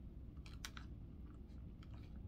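A few faint light clicks and taps against quiet room tone: two about half a second in and another near the end.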